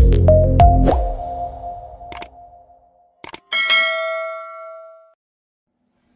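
Intro music sting: a few notes stepping upward over a heavy bass that fades out in the first second or two, followed by one bright ding about three and a half seconds in that rings out for over a second.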